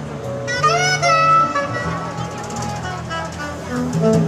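Live jazz quartet: a saxophone plays a phrase of rising, swooping bends about half a second in, over bass notes and a drum kit played with brushes.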